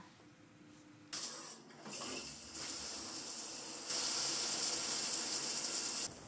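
Handheld shower head spraying water, a steady hiss that starts about a second in and grows louder in two steps.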